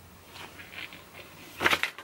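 Paper instruction leaflet and cardboard packaging being handled: faint rustling, then a louder rustle near the end.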